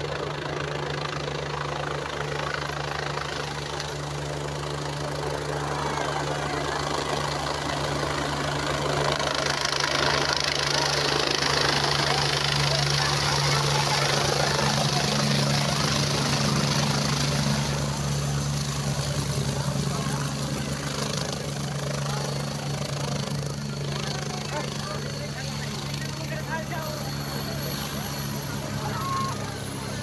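Helicopter coming in to land: the rotor and turbine noise swells as it descends and touches down, with a broad rushing hiss at its loudest mid-way. It then eases off as the machine sits running on the ground, a faint high whine slowly falling in pitch, over the chatter of a crowd.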